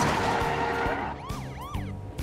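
A rush of noise from a car speeding past, then a police car siren starting up about a second in, sweeping up and down in quick yelps.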